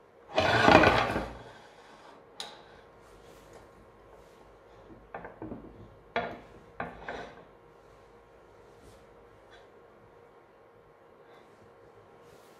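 A glass test tube being fitted into a metal retort-stand clamp. A loud rustling scrape about half a second in lasts about a second, then a few light clicks and knocks of glass and metal follow over the next five seconds.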